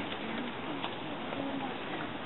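Faint, scattered voices of a group of children over steady outdoor background noise.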